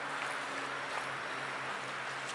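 Small waves lapping steadily at a gravel lakeshore, with a faint, steady low engine hum underneath.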